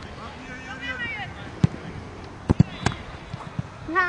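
Outdoor youth football match: faint, distant shouts of children and spectators across the pitch, with a few sharp knocks in the second half, twice in quick succession.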